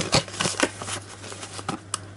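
A cardboard mailer box being folded shut by hand: a quick run of crisp cardboard clicks and scrapes as the flaps are creased and tucked in, thinning out, with one sharp snap near the end. A low steady hum runs underneath.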